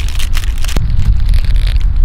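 Wind buffeting the microphone, a loud uneven low rumble, with scattered crackles and clicks over it.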